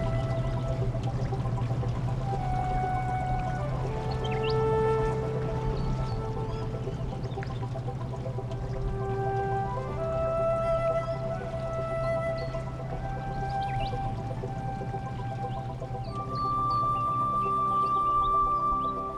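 Slow ambient background music: long held notes that change every second or two over a steady low drone.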